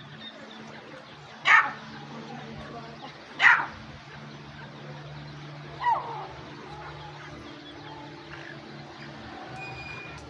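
Francolin (Irani teetar) calling: two loud, harsh, clipped calls about two seconds apart, then a softer call that falls in pitch a couple of seconds later, over a faint steady low hum.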